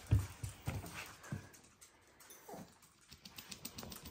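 Small dogs giving faint whimpers and short whines: a few in the first second and a half, and one more about two and a half seconds in.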